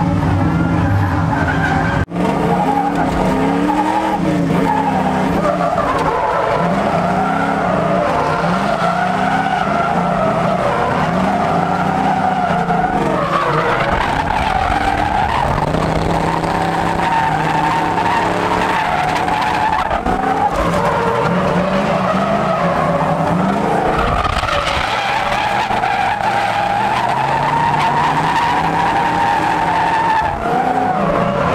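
Drift car engines revving hard, their pitch rising and falling over and over, with tyres squealing and skidding sideways through a close tandem drift, heard from inside the chase car's cabin.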